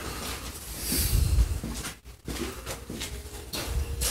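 Low rumbling and rustling handling noise as a reciprocating saw is picked up and carried, with a short gap about halfway through. The saw is not running.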